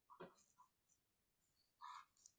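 Near silence, broken by a few faint, brief sounds: one with a falling pitch about a quarter second in, and another near the end.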